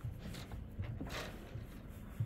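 Low, uneven rumble of wind on the microphone, with a few faint light knocks.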